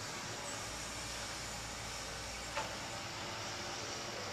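Steady hiss of background noise with a faint low hum, and a single light knock about two and a half seconds in.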